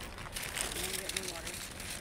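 Crackling, rustling handling noise from the phone being carried, with a faint voice heard in the middle.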